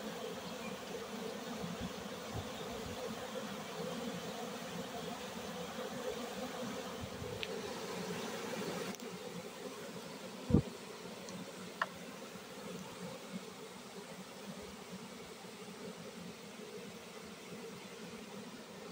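Honeybee swarm buzzing in a steady hum as thousands of bees, just dumped from a bucket at an empty hive, crawl and fly into it; the hum drops a little after about nine seconds. A single sharp knock about ten seconds in, with a faint tick a second later.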